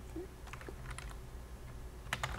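Faint computer keyboard keystrokes: a few scattered clicks as numbers are typed into a spreadsheet, over a low steady hum.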